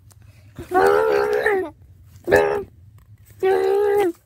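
Three drawn-out pitched vocal calls: a long one of about a second, a short one in the middle, and another held call near the end.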